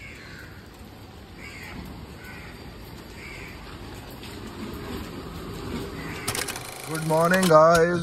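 Steady rain falling, with a bird calling about four times in the first few seconds. A man starts speaking near the end.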